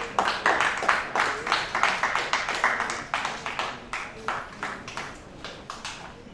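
Audience clapping, a dense run of irregular claps that thins out and fades over the last couple of seconds.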